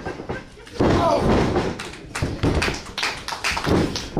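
A body slammed down onto the wrestling ring mat about a second in, a heavy thud, then shouting voices and a few smaller knocks on the canvas.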